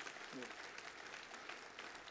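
Faint, steady applause from a church congregation, reacting to the pastor's remark.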